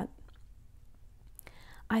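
Quiet pause in a read-aloud: low room hiss, one small mouth click a little under halfway through, then a short breath and the reader's voice starting again at the very end.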